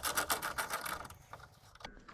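Small hand socket ratchet clicking as it backs out a headlight mounting stud: a quick run of ratchet clicks for about a second, then a few slower, fainter clicks.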